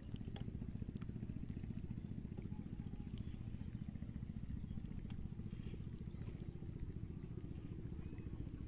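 A steady low rumble, like a small engine running, with a few faint clicks over it.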